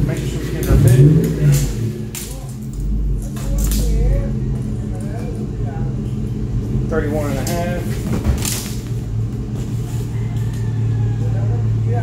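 Steady low electric hum of a workshop, with scattered clicks and knocks from a tape measure being pulled and handled against a fiberglass boat deck, and a few mumbled words about seven seconds in.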